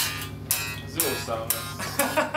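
A band playing: electric guitar over a steady drum beat of about two hits a second.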